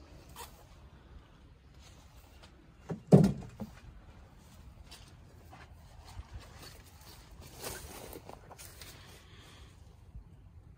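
Faint rustling and handling noise from a handheld recorder moving outdoors, with one loud, dull thump about three seconds in and a longer stretch of rustling near the end.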